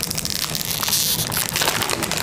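A sandwich wrapper crinkling as it is handled and unwrapped by hand, a dense run of crackles that is busiest in the first second and a half.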